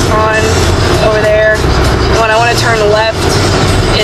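A woman talking over the steady low road and engine rumble inside a small car's cabin while it is driven, in a 2008 Toyota Yaris.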